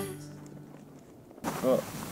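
Background song fading out, then after a brief quiet gap a person starts speaking over a faint outdoor hiss.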